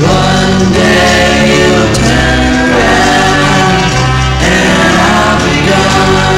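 A 1965 pop single playing: sung group vocals over a band with a steady bass line.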